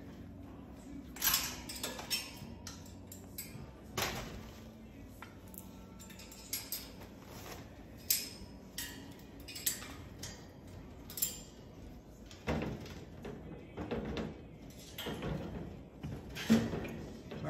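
Moluccan cockatoo climbing about its metal cage: scattered light clicks, clinks and knocks from its feet and beak on the wire bars, with a longer stretch of rustling and knocking near the end.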